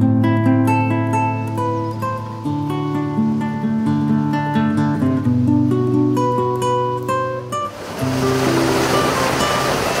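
Background acoustic guitar music, a steady run of plucked notes. About eight seconds in, a loud steady rushing noise comes in under the guitar.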